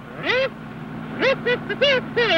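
A kazoo buzzing a short tune of about five nasal, honking notes, each bending up and down in pitch, over the steady low hum of a car engine.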